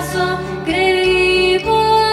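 A woman singing a slow Canarian folk song, long held notes that step to a new pitch twice, with acoustic guitar accompaniment.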